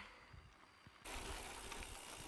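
Quiet for about a second, then a steady rushing noise of a bicycle rolling on a gravel road.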